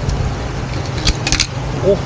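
Handboard clattering on a stone ledge: a quick cluster of sharp clicks about a second in, over a steady low rumble of street background.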